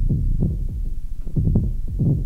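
Synthesized electronic drum hits from a Make Noise Eurorack modular synthesizer, the sounds built with MATHS. An uneven sequenced pattern of low, deep thuds, several a second, each dying away quickly.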